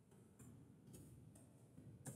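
Faint clicks of a computer keyboard as a few keys are typed, otherwise near silence.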